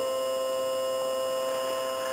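A steady hum of several fixed tones, low and high together, holding level with no change in pitch.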